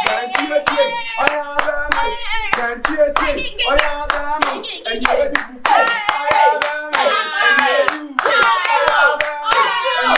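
Hands clapping in a quick, steady rhythm while voices sing along.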